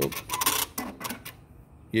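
Juki LK-1900BN computerized bartack machine's presser foot (work clamp) being driven up or down: a quick, irregular run of mechanical clicks and clatter lasting about a second.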